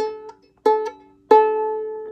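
Violin's open A string plucked pizzicato three times, about two-thirds of a second apart; each note rings and fades, and the third is the loudest and rings longest.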